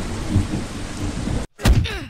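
Steady heavy rain with low rumbling thunder. It cuts off abruptly about a second and a half in, and a few sharp thumps follow.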